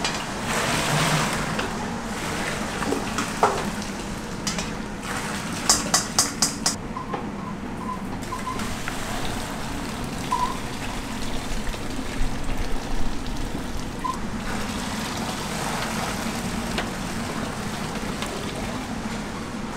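Hot, milky ox-bone broth being poured through a wire-mesh strainer into a metal pot, with a steady splashing wash of liquid. A quick run of about five sharp clinks comes around six seconds in.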